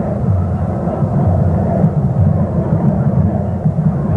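Football stadium crowd heard through an old television broadcast soundtrack: a steady, dull mass of crowd noise with no clear cheer or whistle standing out.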